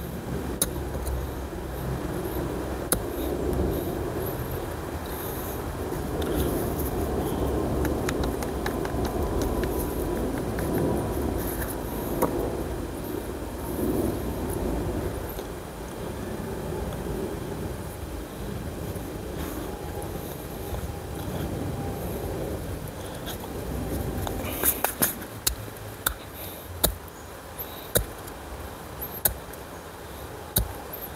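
Hands working soil and handling small plastic plant pots while transplanting seedlings, with a cluster of light clicks and taps near the end, over a steady low background rumble.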